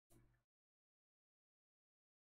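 Near silence: one brief faint sound in the first half-second, then nothing at all.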